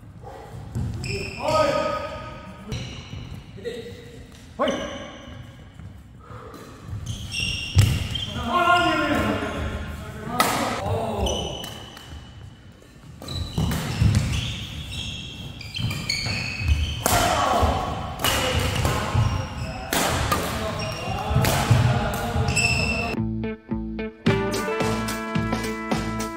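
Badminton doubles rally in an indoor hall: sharp racket strikes on the shuttlecock and short shoe squeaks on the court mat, with players' voices between points.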